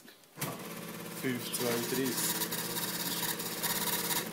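Small weighbridge ticket printer running with a rapid, even buzzing rattle as it prints a weight ticket. It starts about half a second in and goes on for about four seconds, with a man's voice briefly over it.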